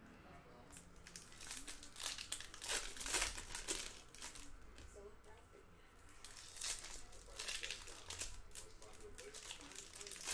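Foil wrappers of Topps Chrome baseball card packs crinkling and tearing as they are peeled open by hand, in two spells: one about two seconds in and another near seven seconds.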